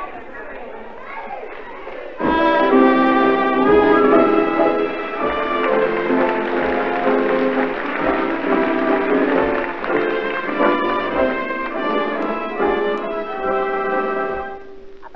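A theatre pit orchestra with brass strikes up loudly about two seconds in, playing held chords that change every second or so, on an old live recording. A voice is heard before the band comes in.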